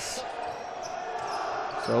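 Basketball game sound in an arena hall: steady crowd noise with a ball bouncing on the court.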